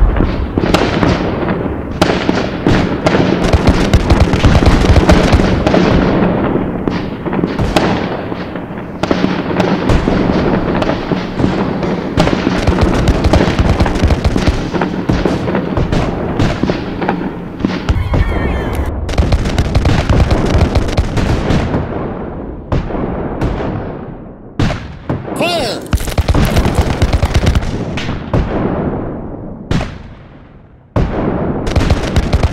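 Battle gunfire: many sharp bangs in quick, overlapping succession, as of musket volleys, with a steady low drone under the first half. The firing thins out and grows quieter near the end.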